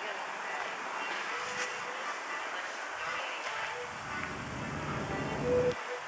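Downtown street ambience: steady outdoor traffic noise, with the low rumble of a vehicle going by in the second half that stops shortly before the end.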